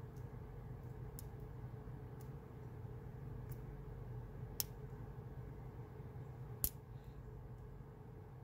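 Small metallic clicks of a dimple pick working the pins inside an Abus EC75 dimple padlock: a few faint ticks, then two sharper clicks in the second half, over a steady low hum.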